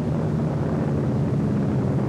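Steady drone of piston-engine propeller fighter aircraft in flight, holding an even pitch.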